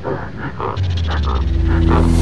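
Gorilla chest-beating sound effect: a quick run of beats, about five a second. A low, steady music drone comes in about a second in.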